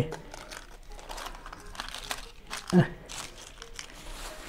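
Thin, dried homemade pastry sheets (jufke) crinkling and crackling as they are handled and laid into a baking pan, a light irregular crackle throughout. One brief louder sound comes near three seconds in.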